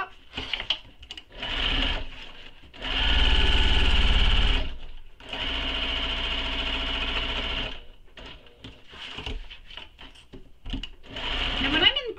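Electric sewing machine stitching a seam through layered fabric in bursts: a brief run, then a louder, steady run of about two seconds, a short pause, and a second run of about two and a half seconds. Fabric rustles and small clicks from handling follow near the end.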